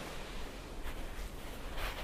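Steady hiss of surf washing onto a shingle beach, swelling slightly near the end.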